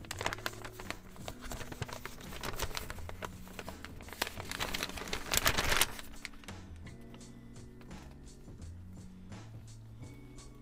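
Plastic-gloved fingers working hair dye through wet hair: a crinkly rustling that is heaviest about five seconds in and stops about a second later, leaving lighter scattered clicks. Background music plays underneath.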